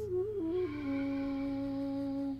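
Soft background music: a sustained, wind-like melody stepping down through a few notes and then holding one long note.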